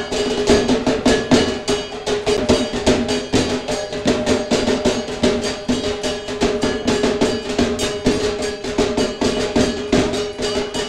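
Percussion music: fast, even drumbeats over a steady held tone.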